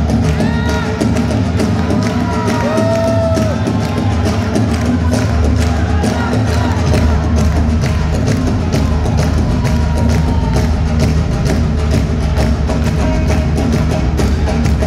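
Live band playing an instrumental passage: drum kit keeping a fast, steady beat under electric guitar and bass guitar.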